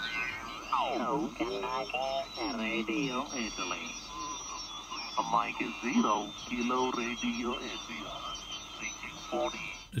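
Garbled single-sideband voices on the 40-metre amateur band coming through a homemade regenerative receiver, their pitch sliding as the ten-turn tuning pot is turned. A whistle sweeps down in pitch about a second in.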